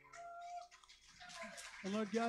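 The last guitar notes fade away, then a man's voice speaks quietly, growing clearer near the end.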